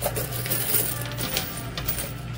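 Quarters clinking and sliding on a coin pusher machine's shelf as the pusher moves. There are a few sharp clinks over a steady low hum.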